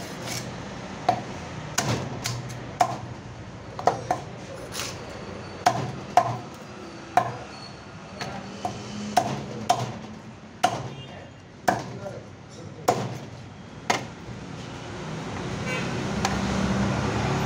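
A long knife chopping king fish into chunks on a wooden block: about fifteen sharp, irregular chops, roughly one a second.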